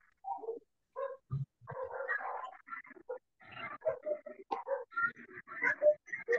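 A dog whimpering and yelping in many short, choppy bursts, heard through a video-call microphone that keeps cutting the sound to silence between bursts.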